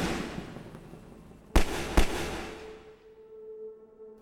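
Two gunshots about half a second apart, each with a long echo, following the fading echo of an earlier bang. A faint low steady tone comes in near the end.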